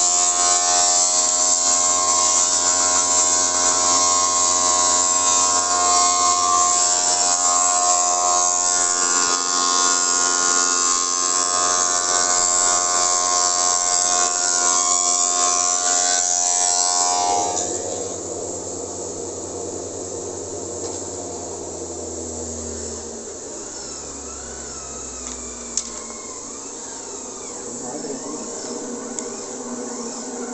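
Spindle moulder's electric motor and cutter head running with a steady whine and hiss. A little past halfway the sound drops suddenly, and the motor hum sinks in pitch as the machine runs down.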